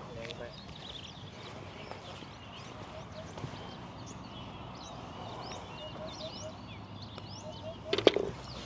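Birds calling and chirping all around, many short high chirps with a repeated short low note in runs of three or four. A brief loud knock comes right at the end.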